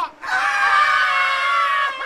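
Several men letting out one long, high-pitched jeering shriek together, lasting about a second and a half and sliding slightly down in pitch.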